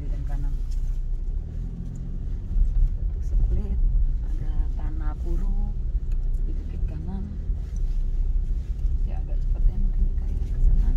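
Low, steady rumble of a car driving slowly over a rough, rutted dirt and gravel track, heard from inside the cabin, with faint voices at times.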